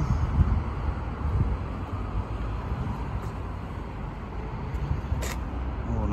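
Low, uneven outdoor rumble, with a single sharp click about five seconds in.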